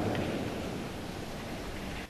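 Congregation's applause dying away in a large, reverberant church, fading steadily.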